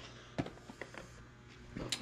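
Quiet room tone with a few faint, short clicks and knocks, and a sharper click near the end.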